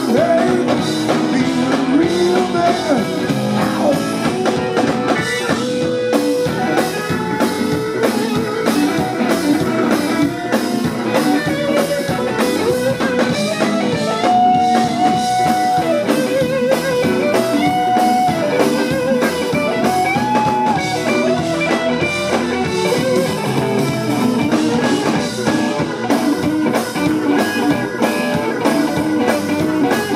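Live blues band playing: an electric guitar plays lead lines with long held, bent and wavering notes over drums and bass.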